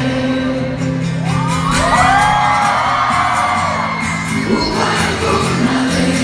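Live band music with singing, and the audience's voices whooping and cheering over it, several overlapping rising-and-falling calls swelling from about one to four seconds in.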